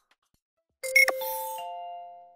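Short musical logo sting: a sudden entry with a bright hit about a second in, then three chime tones coming in one after another (low, high, then middle) and ringing on as they fade.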